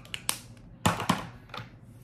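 Makeup items being handled: a handful of short, sharp clicks and taps, the two loudest close together about a second in.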